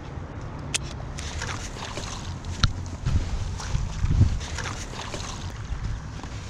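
Wind buffeting the microphone over water noise around an inflatable kayak, with a few sharp clicks and knocks from handling. A heavier rumble comes a little past the middle.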